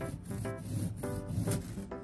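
Serrated bread knife sawing back and forth through a crisp cocoa cookie sandwich with a soft chocolate ganache filling: a dry, rasping crunch, about two strokes a second.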